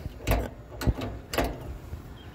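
A control lever on a vintage Springfield riding mower being worked by hand: three metallic clicks about half a second apart as the linkage moves.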